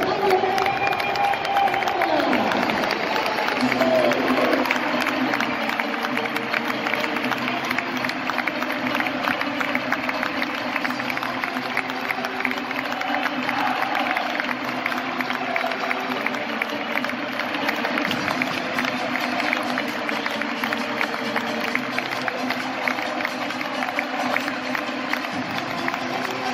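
Football stadium crowd cheering and clapping, with music playing over it.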